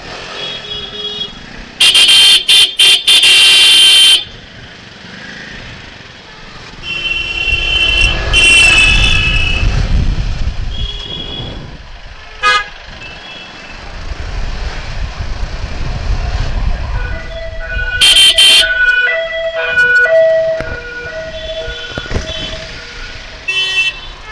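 Vehicle horns honking in slow street traffic: one very loud horn held for about two seconds a couple of seconds in, then more horns and a run of short toots through the second half, over the low rumble of a moving motorcycle.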